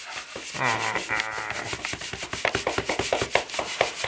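Clothing rubbing and scraping close to the camera microphone during a tight hug, a fast rasping run of noise, with brief laughter about a second in.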